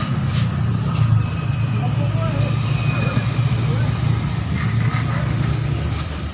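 Steady low rumble of a vehicle engine running, with faint voices in the background.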